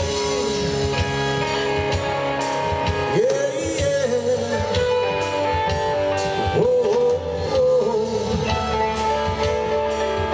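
Live rock band playing: electric guitar, bass guitar and drum kit, with a male lead vocal.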